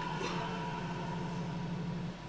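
A low, steady, pulsing drone with a held higher tone above it, from the anime episode's soundtrack.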